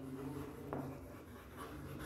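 Faint chalk writing on a blackboard as a word is written out.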